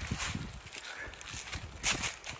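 Footsteps crunching through dry fallen leaves on a woodland trail, irregular steps with a louder crunch near the end.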